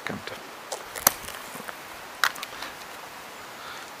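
A few short, sharp clicks and light rustles of hands handling small gear and gravel, over a quiet outdoor background; the clearest click comes about a second in, another a little over two seconds in.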